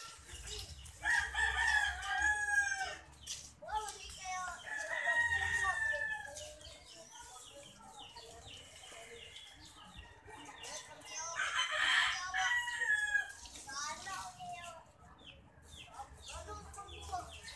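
A rooster crowing several times in long, drawn-out calls.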